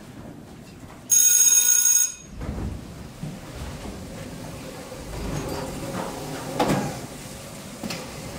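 A loud ringing bell sound effect sounds for about a second, then cuts off abruptly. After it come scuffing, footsteps and a knock as chairs are carried across the stage and set down.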